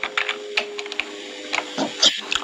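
Typing on a keyboard: a run of short, irregular clicks, with a faint steady hum underneath.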